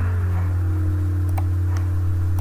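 Steady low electrical hum from the recording chain, with one faint click about one and a half seconds in: a computer mouse button being clicked.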